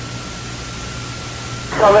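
Radio static on an open channel between transmissions: a steady hiss with a thin, faint steady whistle and a low hum under it. A voice breaks in near the end.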